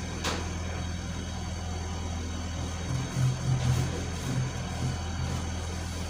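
A steady low mechanical hum, like a motor running, with a low rumble that swells a few times about halfway through.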